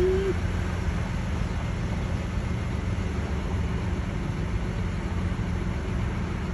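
Steady low rumble of street traffic at a city intersection, with no distinct single vehicle standing out.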